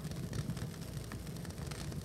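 Sound track of old videotaped documentation footage of a gallery installation: a steady low rumble and hiss with many small faint crackles, no voices.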